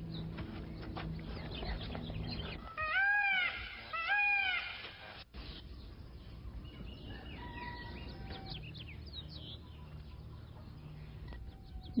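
Two short calls from a farm animal about a second apart, each rising and then falling in pitch, with faint bird chirps behind them.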